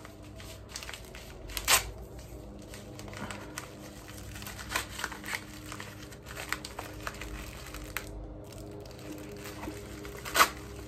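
Thin plastic packaging crinkling and tearing as small packets are opened by hand, with scattered sharp crackles, the loudest about two seconds in.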